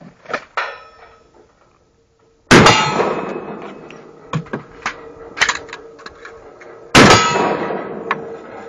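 Two loud gunshots from a shouldered long gun, about four and a half seconds apart, each trailing off in a long ringing decay. A few light sharp clanks fall between them.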